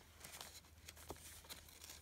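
Faint rustling and light taps of paper notepads being slid and lifted by hand, over a low steady hum.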